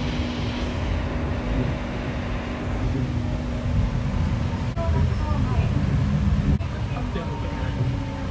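Cabin running noise of a Nippori-Toneri Liner rubber-tyred automated guideway train moving along its elevated track: a steady low rumble with a faint motor whine, whose tones shift about halfway through.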